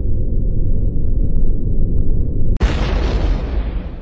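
Cartoon sound effect of a genie erupting from a bottle: a loud, deep rumble, then a sudden explosive blast about two and a half seconds in that slowly fades away.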